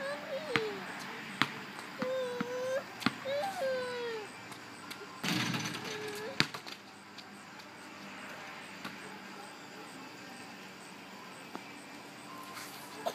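A basketball bouncing a few times on a concrete driveway, then a shot striking the rim and backboard over a garage with a rattling crash about five seconds in, followed by a sharp bounce as the ball comes down.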